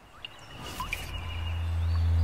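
Fade-in at the start of a soundtrack: a low steady drone swelling in loudness, with a few short bird-like chirps and a thin high tone over it.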